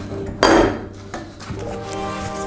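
A single loud metallic clank about half a second in, from the handle of a media-blasting cabinet being worked, followed by a couple of lighter clicks, over background music.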